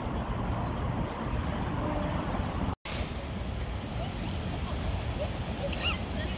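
Steady outdoor urban ambience: a low rumble of open-air noise with faint distant voices. The sound drops out for an instant just before three seconds in, at an edit.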